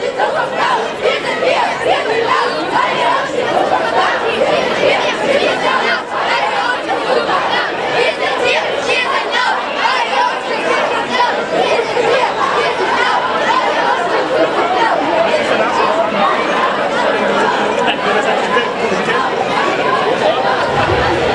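Large marching crowd chattering, many voices talking at once in a steady, continuous hubbub.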